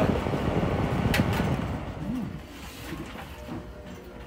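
Holmes Tropicool desk fan running, its air rushing on the microphone held close to the grille, then softer about halfway through as the microphone moves back. A single sharp click about a second in.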